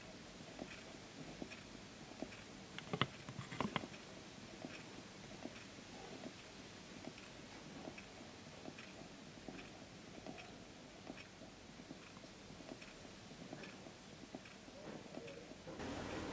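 Small low-temperature-difference Stirling engine running with a faint, regular ticking from its moving parts as the flywheel turns, driven by heat from quicklime slaking in the pot beneath it. A few louder clicks come about three to four seconds in.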